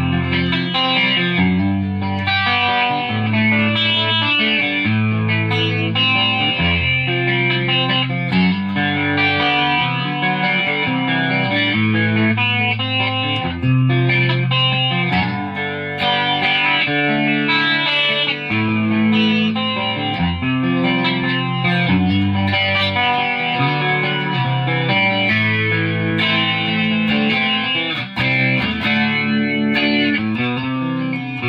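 Squier '51 electric guitar being played continuously, a steady run of changing chords and picked notes.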